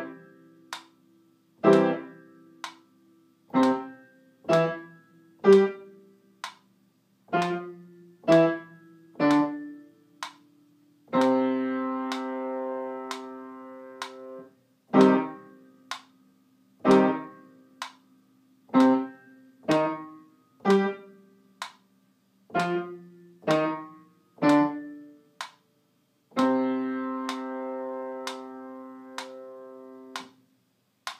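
Piano playing short detached chords, starting on C major (C-E-G), at about one a second. A longer held chord comes about eleven seconds in and another near the end.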